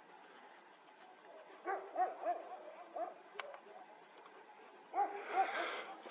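Faint, short animal calls that rise and fall in pitch, coming in small groups: a few about one and a half seconds in, one about three seconds in and a few more near the end. A single sharp click sounds in the middle.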